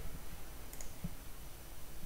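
A couple of faint, short clicks over quiet, steady microphone background noise.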